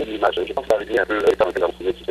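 Speech only: a voice talking over a telephone line, thin and band-limited, with a steady low hum underneath.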